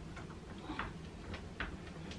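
Faint, irregular small clicks and ticks of an Allen key turning bolts and cam fittings into a cot bed's panels by hand, about five clicks unevenly spaced.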